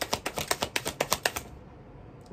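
Tarot cards being shuffled by hand, a fast run of crisp card clicks, about ten a second, that stops about one and a half seconds in.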